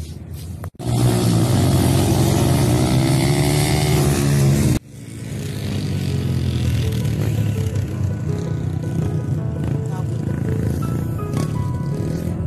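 A motor vehicle engine running and revving, its pitch rising and falling, then cut off suddenly; after it a steady rushing noise with a low rumble, and music coming in near the end.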